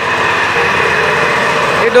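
Small walk-behind double-drum vibratory road roller's engine running steadily.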